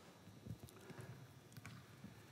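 Near silence broken by a few faint, irregular thuds: players' footsteps and a ball being dribbled on indoor artificial turf.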